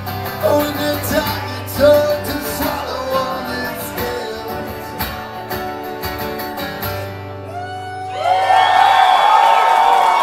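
A man singing over a strummed acoustic guitar, the song winding down about seven seconds in. From about eight seconds in, a crowd cheers and shouts, louder than the song.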